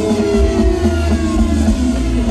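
A live band's closing passage: held notes over a heavy, steady bass, several of them gliding slowly downward in pitch.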